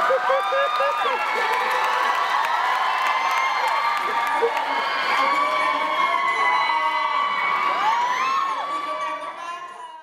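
Concert audience cheering and screaming, many high-pitched shrieks and whoops overlapping, fading out at the very end.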